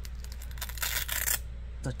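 Velcro (hook-and-loop) strap on a sandal being pulled apart: a rasping rip lasting about a second, louder toward its end.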